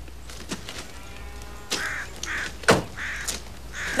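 A car door shutting with one sharp thunk about two-thirds of the way through, the loudest sound here, while a bird calls several times in short, evenly spaced calls.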